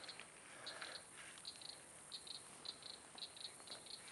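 Faint, high clicking in short runs of two or three, repeating about twice a second: the call of an unseen marsh animal, which the listener fears is a baby alligator calling for its mother.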